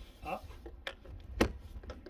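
Plastic outer clip of a vinyl gutter joiner being pulled up over the gutter's front edge: a few light plastic clicks and one sharp click about a second and a half in.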